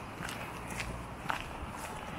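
Footsteps of a person walking on a wet paved path, a few steps about half a second apart over a low steady rumble.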